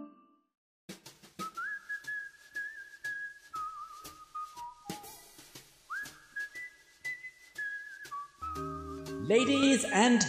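A whistled tune over a light clicking beat, sliding up into a held note twice. Near the end a low held tone and a voice come in.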